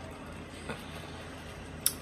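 Quiet indoor room background with a faint steady low hum, a soft brief sound about two-thirds of a second in, and one short click near the end.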